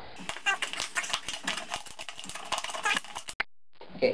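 X-Acto craft knife cutting through the thin plastic of a two-liter soda bottle: a rapid, irregular run of crackling clicks with a few short squeaks as the blade works around the bottle. It stops abruptly near the end.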